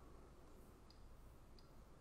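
Near silence: faint room tone with two tiny ticks.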